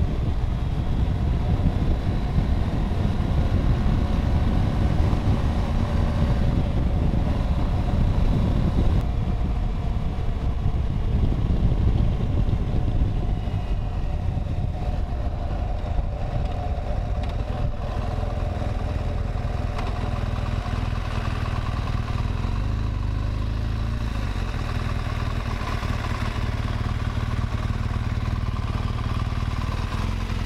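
BMW R1200 GS Adventure's boxer-twin engine running at road speed with wind noise on the microphone. About two-thirds of the way through it eases off into a slower, steadier low rumble.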